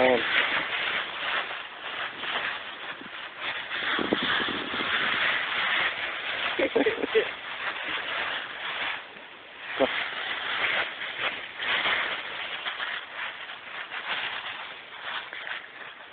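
A puppy digging and pouncing through a pile of dry fallen leaves, the leaves rustling and crunching without a break.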